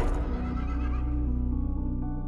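A horse whinnying over low, sustained film-score music, with a rising whoosh peaking right at the start.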